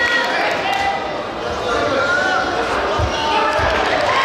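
Overlapping shouts from coaches and spectators in a large sports hall, with two dull thumps about three seconds in, a little over half a second apart, as the taekwondo fighters close in on each other.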